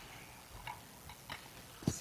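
Small, irregular clicks and clinks of communion vessels being handled on the altar, about four in two seconds, with the sharpest just before the end.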